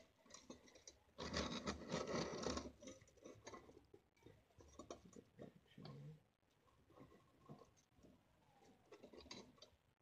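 Small clicks and scratches of a thin copper sheet and metal alligator clips being handled and moved on ceramic tiles, with a louder stretch of rustling about a second in that lasts about a second and a half.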